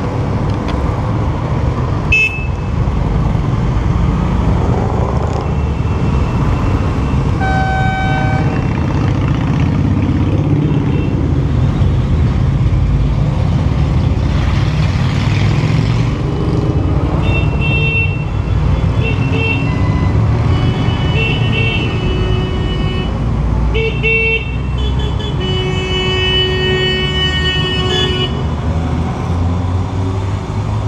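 Motorcycle and car engines running in a steady low rumble as a group of motorcycles rides slowly past. A horn toots once about eight seconds in, then short horn toots come again and again in the second half as small cars come through.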